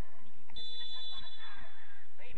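Referee's whistle: a single steady high blast lasting just under a second, starting about half a second in, most likely signalling a set piece to be taken.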